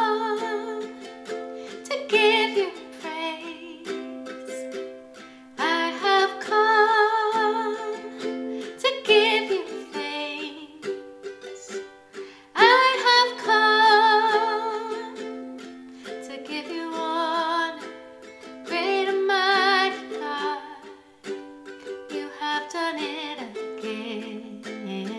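Ukulele strummed in steady chords while a woman sings over it in phrases a few seconds long, her held notes wavering with vibrato.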